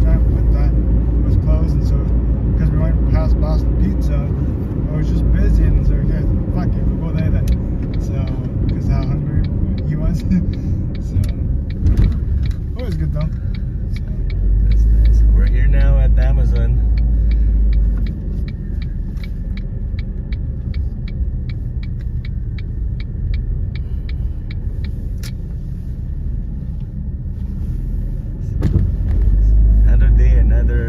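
Car driving, heard from inside the cabin: a steady low rumble of engine and road noise. Partway through, a rapid, even ticking starts and runs for several seconds.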